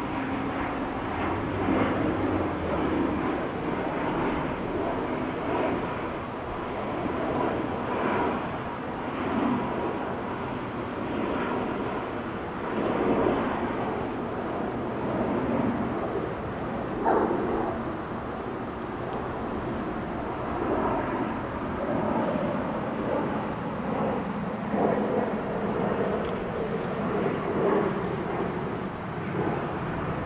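Honey bees buzzing at the hive, a continuous dense hum of many bees that rises and falls in loudness with brief louder swells.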